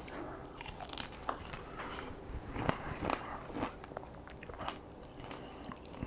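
Pomegranate seeds being bitten out of a piece of the pod and chewed: a scatter of small, quiet crunches and clicks.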